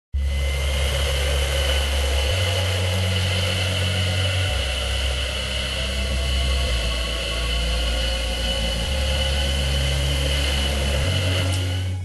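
Steady noise of a car driving at speed, with a deep low hum that steps to a new pitch about every two seconds.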